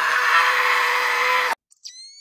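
A man's long, hissing mouth sound of an energy blast, acted out as a cartoon attack, cut off abruptly about one and a half seconds in. Near the end a thin electronic tone starts and sweeps steadily upward.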